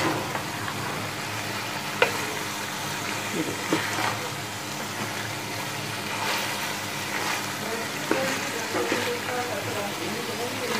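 Potato chunks and beef mince frying in oil in a steel pot, sizzling steadily as they are stirred with a wooden spoon, with a few sharp knocks of the spoon against the pot.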